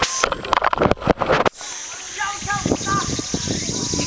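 Bumps and rustling against the microphone, which stop about a second and a half in. After that a steady high drone of insects in the forest below comes through, with a few short chirps in the middle.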